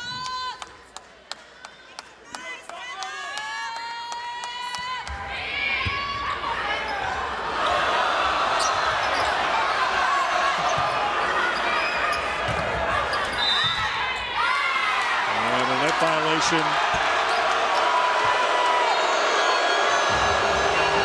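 A volleyball bounced repeatedly on a hardwood court before the serve, with short high sneaker squeaks. About five seconds in, arena crowd noise swells and stays loud as cheering through the rally.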